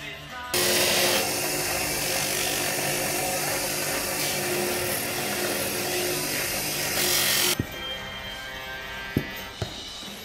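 Bench grinder running with a buffing wheel, polishing the painted edge of a leather axe sheath: a loud, steady motor noise with a steady hum that starts abruptly about half a second in and cuts off suddenly about seven and a half seconds in. Two sharp knocks follow near the end.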